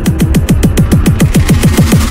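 Deathstep (heavy dubstep) electronic music: a fast, speeding-up roll of drum hits, each falling in pitch, building up to a drop. The roll cuts off at the very end.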